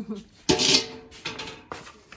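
Steel trowel scraping and scooping cement mortar in a bucket: one short, loud scrape about half a second in, then fainter scraping.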